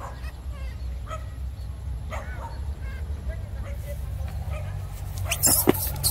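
Dog giving short yips and whimpers at intervals of about a second, over a steady low rumble. A loud rustling burst comes near the end.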